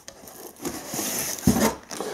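Shrink-wrapped firecracker pack scraping and rustling against the cardboard box as it is pulled out, with a soft thump about one and a half seconds in.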